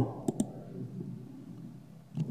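Two quick, sharp clicks in close succession about a quarter of a second in, then faint room noise.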